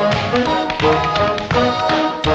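Tap dancing in tap shoes on a wooden floor over an orchestral film soundtrack, with crisp taps falling in a steady rhythm of about three a second.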